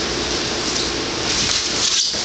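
Wrestlers' shoes shuffling and scuffing on a foam wrestling mat under a steady hiss of background noise, with a thump near the end as one shoots in on the other's leg.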